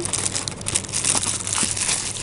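Clear plastic wrap crinkling around a rice mold as it is pulled by hand out of its cardboard box, a continuous run of small crackles.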